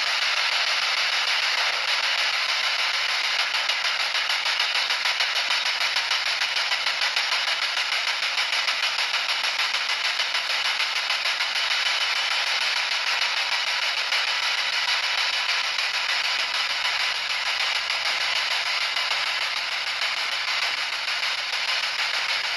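Spirit box sweeping through radio frequencies, giving a steady hiss of radio static with a fast, fine flutter as it steps from station to station.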